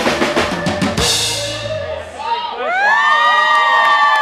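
Live band ending a song on final drum hits and cymbal crashes, stopping about two seconds in. The audience then cheers, with long, sliding high-pitched shouts.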